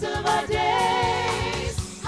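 A women's gospel vocal group singing in harmony over instrumental backing, with one voice holding a long, wavering note in the middle.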